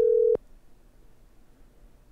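Telephone ringback tone of an outgoing call, a steady tone that cuts off with a click about a third of a second in. Faint phone-line hiss follows while the call waits to be answered.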